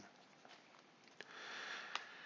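A man's quiet breath in, lasting about half a second, taken between spoken sentences, with a faint mouth click just before it and another near the end.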